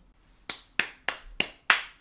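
Five sharp finger snaps in quick succession, about three a second.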